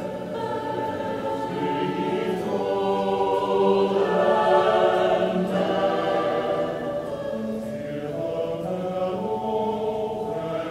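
Mixed choir singing sustained chords with a handbell ensemble, swelling to its loudest around the middle and easing off toward the end.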